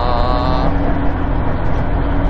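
Interior noise of a Subaru WRX STI (VAB) with its EJ20 flat-four cruising at low revs on the expressway: a steady engine drone under constant road and tyre noise.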